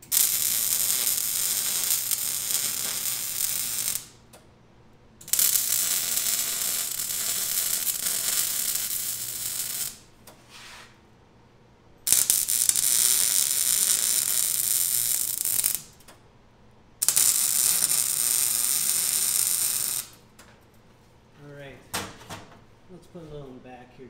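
MIG welder arc crackling in four welds of about four to five seconds each, with short quiet pauses between, as steel legs are welded onto the feet of a scrap-metal sculpture. A few light metal knocks follow near the end.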